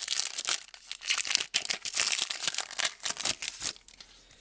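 Crinkly foil wrapper of a football trading card pack being torn open and crumpled by hand: a quick, irregular run of sharp crackles that stops just before the end.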